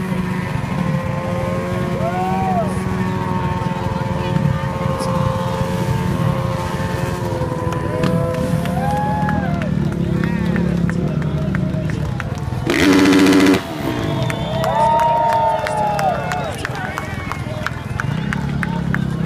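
Crowd chatter at a freestyle jump show, with motor engines revving up and falling back several times. One short, close engine rev about thirteen seconds in is the loudest moment.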